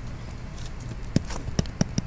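Stylus tapping and sliding on a tablet screen during handwriting: a few irregular sharp taps, most of them in the second half, over a low background hum.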